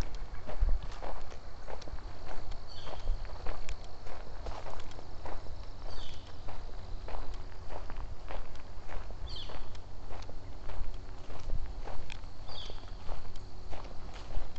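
Footsteps at a steady walking pace on a dirt trail scattered with dry leaves. A bird gives a short, high, falling call about every three seconds.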